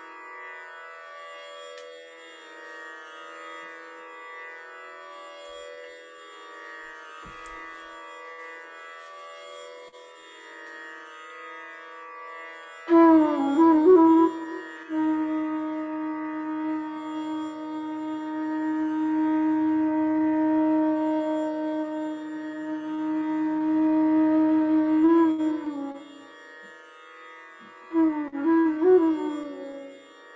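A steady, sustained drone plays alone, then about thirteen seconds in a side-blown flute enters over it with a quick ornamented phrase and holds one long low note for about ten seconds, breaking into more ornamented turns near the end.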